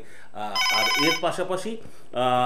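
Desk landline telephone ringing with an electronic warbling trill, one short ring of well under a second, signalling an incoming call; a voice is heard after it.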